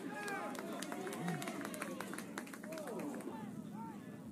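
Field sound of a rugby match: distant players' shouts and calls, rising and falling in pitch, with scattered light knocks and ticks.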